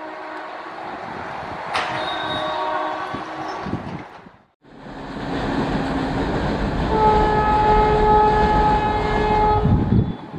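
Vande Bharat Express (Train 18) electric trainsets running at speed toward the track, with horn blasts: a shorter one about two seconds in, and a long steady one of about three seconds near the end, the loudest sound. The sound drops out for a moment near the middle where the footage cuts from one train to another.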